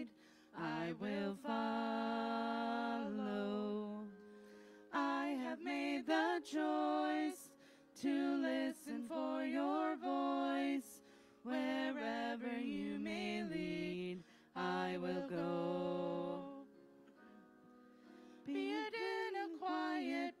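Voices singing a worship song in phrases of held notes, with short pauses between phrases and a longer pause near the end.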